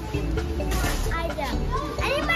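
A young girl's voice talking, with background music underneath and a short rustling noise about a second in.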